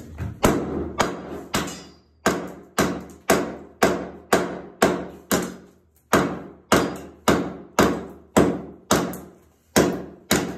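A hatchet blade striking old vinyl composition (VCT) floor tiles over and over, chipping them loose from the floor: sharp blows about two a second, each fading quickly.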